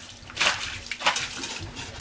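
A hand splashing in groundwater standing at the bottom of a trench dug along a basement footer, two short splashes about half a second apart.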